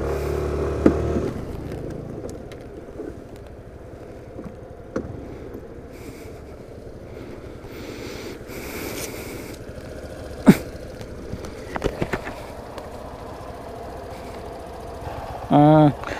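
Suzuki Burgman Street 125 scooter on the move: its engine tone is strong for about the first second and a half, then sinks into steady road and wind noise on the microphone, with a few sharp clicks later on.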